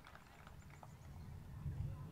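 The last few scattered claps of applause die away over the first second, leaving a faint low rumble that swells slightly near the end.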